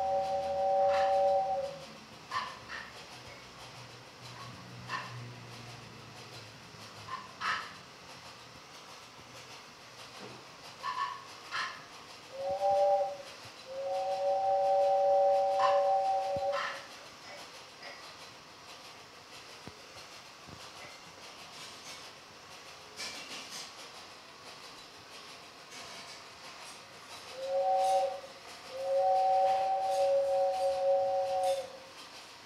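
Toy train whistle sounding a steady two-note chord in toots: a long toot that stops about a second and a half in, then a short toot and a long one about three seconds long around the middle, and another short-then-long pair near the end. Faint scattered clicks and rattles fill the gaps.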